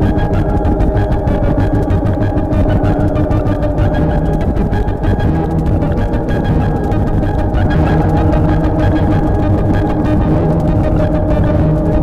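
Drum machines played through a Korg X-911 guitar synthesizer: a fast, even electronic pulse under sustained synth tones.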